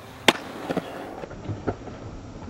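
Skateboard on concrete: one sharp, loud clack about a third of a second in, then the wheels rolling with a few lighter clacks.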